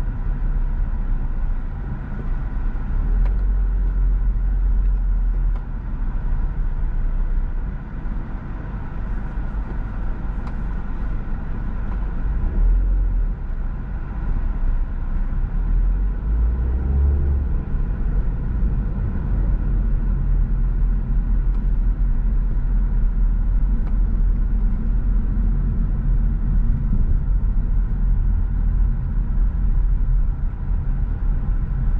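A car driving on a city road: a steady low rumble of engine and tyre noise, with no distinct events.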